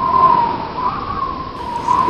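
A single high whistling tone that wavers slightly in pitch, over a steady hiss.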